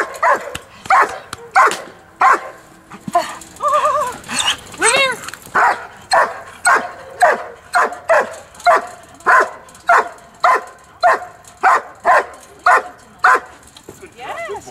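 A dog barks over and over at a protection helper in a blind, in an IPO bark-and-hold. The barks come steadily, about two a second from midway on.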